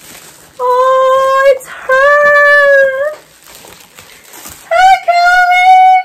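A woman singing three long held notes, the second slightly higher than the first and the third higher still.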